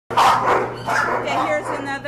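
Dogs barking and yipping in an animal shelter kennel, a run of short loud calls over a steady low hum.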